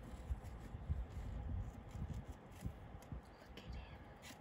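Faint handling noise: soft, irregular rubs and light knocks as a hand moves among the plastic leaves of a gecko enclosure.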